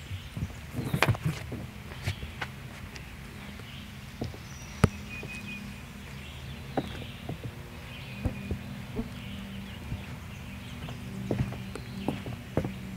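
Footsteps and shoe scuffs on a wooden deck as one person steps and kicks through a shadow-boxing drill, with scattered sharp taps and knocks, the sharpest about five seconds in.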